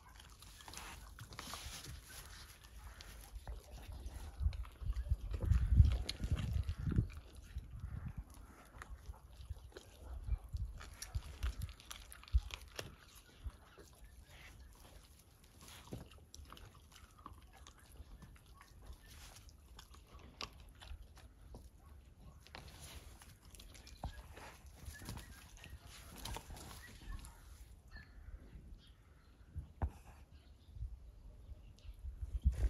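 A lion cub chewing and tearing at a raw carcass, with many small clicks and crunches of teeth on meat and bone. A louder low-pitched stretch comes about five to seven seconds in.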